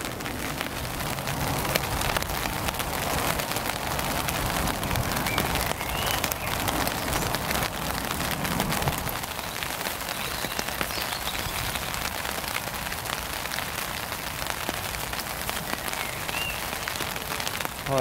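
Steady rain pattering on the taut nylon tarp overhead, a dense patter of small drop ticks.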